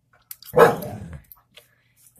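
A single short, loud vocal sound about half a second in, falling in pitch and fading within a second.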